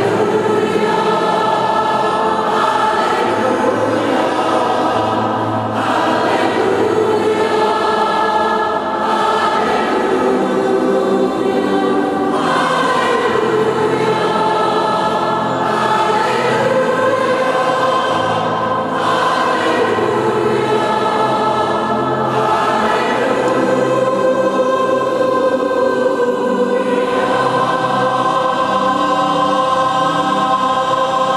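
Large mixed choir of men's and women's voices singing held chords that change every few seconds, in a large, echoing church.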